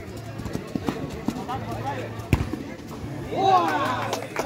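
Amateur football on artificial turf: players shouting to each other, with light knocks of boots and ball and one sharp thump of the ball being kicked a little past halfway. A loud shout comes near the end.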